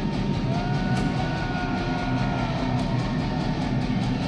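A live heavy metal band playing: distorted electric guitars hold long, slightly bending notes over bass and drums.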